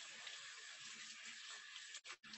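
Faint, steady hiss of tap water running into a stainless steel sink as an indigo-dyed t-shirt is rinsed under it.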